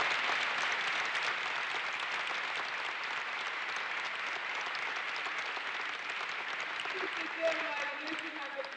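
Audience applauding, the clapping slowly dying down, with a voice starting up again near the end.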